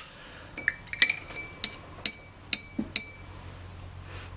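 A paintbrush clinking against the rim of a glass water jar as it is rinsed: about five sharp, ringing clinks roughly half a second apart.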